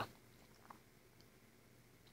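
Near silence: room tone, with one faint click about two-thirds of a second in from a press on an oven's touch-pad control buttons.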